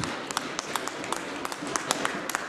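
Scattered applause from members in a parliamentary debating chamber: many quick, irregular claps, with one sharp thud right at the start.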